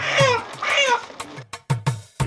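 Two loud, high animal cries, each falling in pitch, in the first second, over background music with a drum beat.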